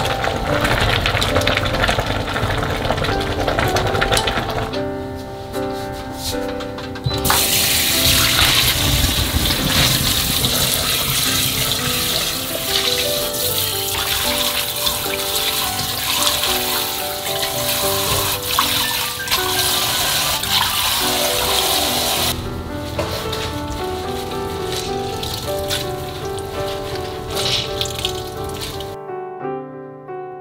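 Kitchen tap water running onto blanched greens in a steel basin, starting about seven seconds in and stopping about twenty-two seconds in, over soft piano background music. At the start, water boils in a steel pot.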